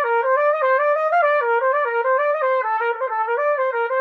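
Trumpet playing a quick, stepwise technical-study passage in B-flat concert, the notes moving up and down within about a fifth at roughly four or five notes a second.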